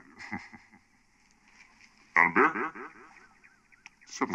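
Two short bursts of a person's voice, with no words made out, about two seconds apart. It is quiet in between.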